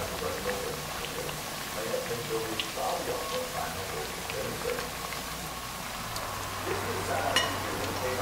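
Dough dumplings frying in a pan of hot oil: a steady sizzle with scattered small crackles and pops, and one sharper pop about seven seconds in.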